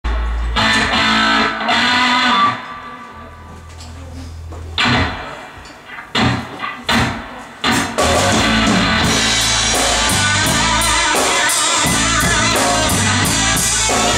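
Live blues-rock trio of electric guitar, electric bass and drum kit: a loud chord rings out and dies away, a few short separate band hits follow, then the full band comes in with a steady beat about eight seconds in.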